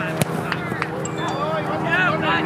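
A soccer ball kicked once, a sharp thump just after the start, amid shouting from players and spectators over a steady low hum.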